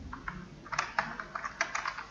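Computer keyboard typing: a quick run of about a dozen keystrokes, starting a moment in.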